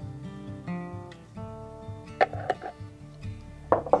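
Background acoustic guitar music: soft plucked and strummed notes.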